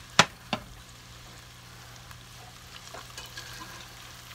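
Breaded onion rings deep-frying in hot oil, a steady sizzle throughout. Two sharp clacks near the start are the loudest sounds.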